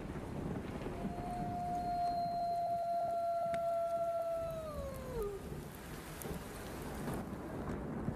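Live concert sound in a large venue: a single long note, sung or played, held steady for about three seconds and then sliding down in pitch before it fades. Under it runs a constant low rumble of crowd and sound-system noise.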